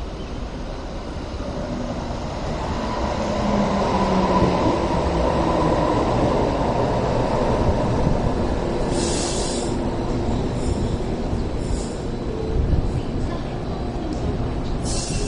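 A Hong Kong Light Rail train pulling into a stop, its running noise growing louder as it comes in, with a thin squealing whine for a few seconds. Near the end there are two short hisses and a low thump as it comes to rest.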